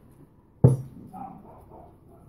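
A single sharp knock of a hard object against the tabletop about half a second in, with a short dull thud under it, followed by faint handling sounds as a deck of tarot cards is picked up.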